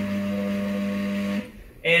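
Stepper motor driving the camera robot's A-axis rotation counterclockwise, a steady pitched hum that stops about one and a half seconds in. It is noisy and vibrating because the stepper drivers lack silent stepping and the rig carries no weight.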